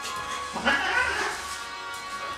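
Maine Coon cat gives one yowl, rising in pitch, about half a second in, while a border collie pulls its tail. Steady background music plays throughout.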